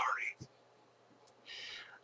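A man's voice trails off at the start with a rising pitch, then a pause, then a short breathy in-breath or whisper just before he speaks again.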